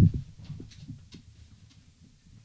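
Handling noise from a person getting up at a desk: a low thump right at the start, then a few faint knocks that die away within about a second.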